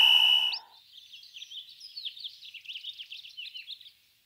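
Birds chirping in a rapid, dense flurry of short high chirps. It is opened by a held high tone that ends in a quick upward slide.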